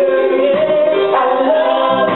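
A small group of male and female voices singing a gospel chorus together in long held notes over a reggae backing beat.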